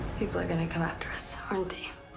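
Film trailer dialogue: a voice speaking a hushed line, with a short pause between phrases.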